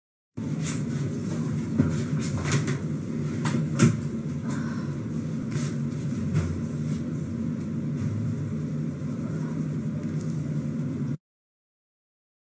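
Steady low rumble of background noise with a few sharp clicks and knocks scattered through it, the loudest a little under 4 seconds in; it cuts off abruptly near the end.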